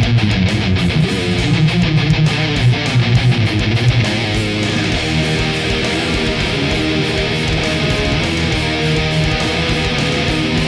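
Heavy metal rhythm guitar: a distorted seven-string electric guitar through a Diezel amp simulation, playing a fast, choppy riff for about four seconds and then moving to held chords.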